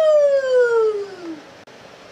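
A woman's voice letting out one long, loud 'fuuu!' whoop that slides steadily down in pitch and dies away about a second and a half in.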